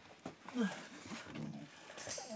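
A dog in a wire crate whimpering softly in short, falling notes, with a few light clicks.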